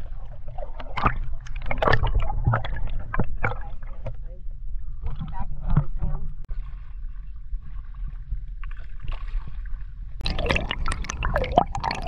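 Water splashing and gurgling around a camera as it is dipped in and out of the water from a kayak, over a constant low rumble. There are irregular splashes in the first half, a quieter spell, then busier churning near the end as the camera goes under again.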